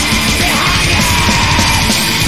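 Melodic black metal recording with fast drumming and distorted guitars; a harsh screamed vocal comes in about half a second in and is held.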